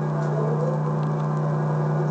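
A steady low electrical hum.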